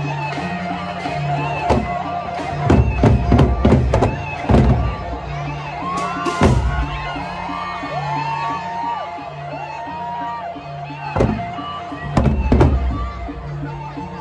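Gendang beleq ensemble, the Sasak big-drum gamelan of Lombok, playing: a repeating low melodic figure runs under a steady high tone, and the large barrel drums are struck in loud clusters of strokes about three seconds in, again briefly past the middle, and near the end.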